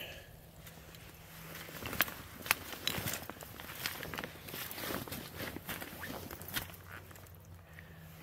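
Footsteps and rustling of brush and branches, with a few sharp snaps or clicks about two to three seconds in.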